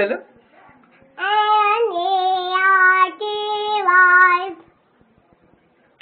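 A young child's voice singing three long held notes, one after another, starting about a second in and stopping a second or so before the end.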